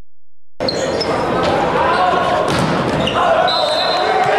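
Men's volleyball rally in a large gym: the ball is struck several times, each hit a sharp smack echoing in the hall, with players calling out. The sound cuts in about half a second in.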